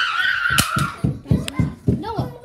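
A child's high-pitched scream held for about a second, followed by a run of quick low thumps, about three a second.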